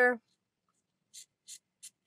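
Three faint, short scratchy rustles in quick succession from about a second in, from a scrap of plaid fabric being handled.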